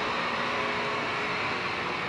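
Steady electrical hum and hiss from neon lighting, a constant buzz with a few faint held tones and no change.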